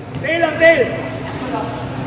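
Speech: a man's voice with one short call about a quarter of a second in, then steady low background noise from the court.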